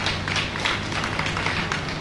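Scattered applause from a small audience, several people clapping unevenly, over a steady low hum.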